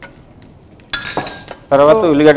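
Kitchen utensils clinking against dishes about a second in, with a short ring.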